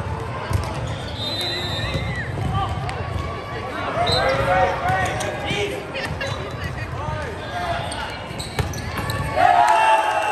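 Live sound of an indoor volleyball rally in a large gym hall: sneakers squeaking on the court floor, the ball being struck, and players calling out, all echoing. Near the end a louder burst of shouting.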